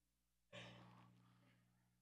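A single breathy sigh or sharp exhale into the microphone about half a second in, fading over about a second, over a faint steady electrical hum.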